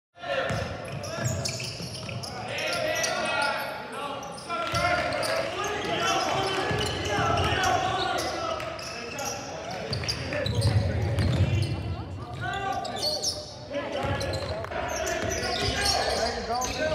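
Live sound of a basketball game in a gym: voices of players and bench calling out over a basketball bouncing on the hardwood court, echoing in the large hall. It cuts in suddenly just after the start, out of silence.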